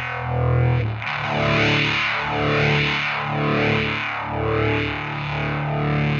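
Fuzzed electric guitar playing sustained chords through the EarthQuaker Devices Aurelius in a slow, thick phaser setting, the tone sweeping about once a second. The chords change about a second in.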